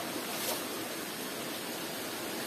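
A steady, even rushing background noise with no clear source, and a faint brief rustle about half a second in.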